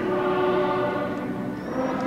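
Choir singing sustained notes, moving to a new chord about one and a half seconds in.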